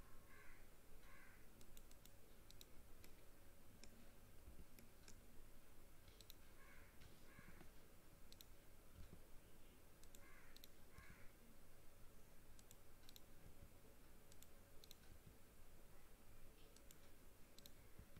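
Faint, scattered clicks of a computer mouse and keyboard over near-silent room tone.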